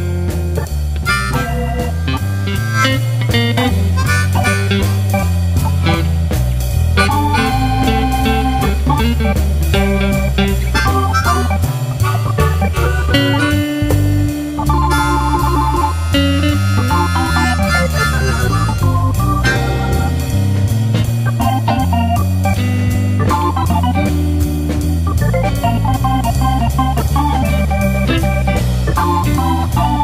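Instrumental background music with a steady beat, with organ and guitar.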